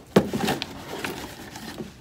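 Cardboard box being handled and set in place: a sharp knock just after the start, then smaller knocks and scraping and rustling of cardboard.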